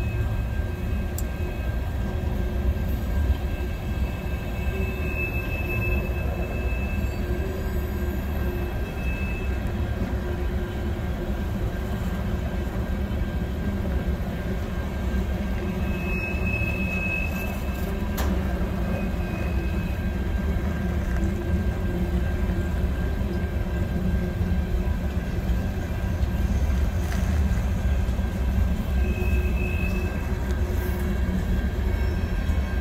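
Empty covered hopper cars of a long freight train rolling steadily past: a continuous rumble of wheels on rail, with a few brief, faint high squeals now and then.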